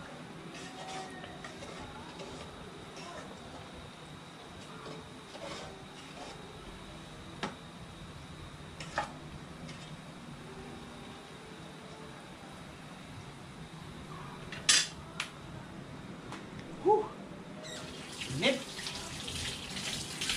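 A metal spoon stirring caramelizing bananas in a metal pot on a gas burner, with a few sharp clinks of spoon on pot and a louder clatter about three-quarters of the way in. Near the end a tap starts running into a steel sink.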